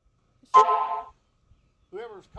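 A car horn honks once, briefly, about half a second in.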